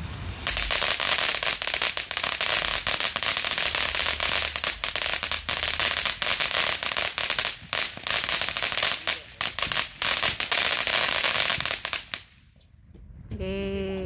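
Ground fountain firework spraying sparks with a loud steady hiss and dense crackling, cutting off about twelve seconds in.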